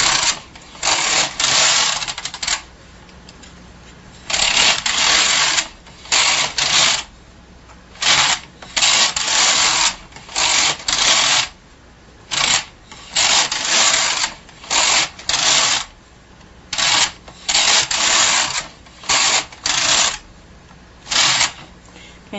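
Bond hand knitting machine carriage pushed back and forth across the needle bed, knitting rows: repeated rasping runs of the needles clicking through the cams, each pass lasting up to about a second, with short pauses between passes.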